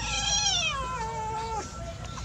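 A kitten giving one long meow that falls in pitch, lasting about a second and a half.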